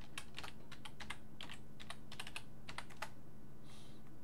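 Computer keyboard typing: a run of quick keystrokes for about three seconds as a password is entered, then a pause and one softer sound near the end.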